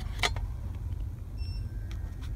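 Trading cards being slid and flipped against each other by hand: a short, sharp card swish about a quarter second in and a fainter one near the end, over a steady low rumble.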